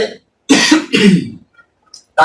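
A man coughing and clearing his throat: two short, loud bursts in quick succession about half a second in.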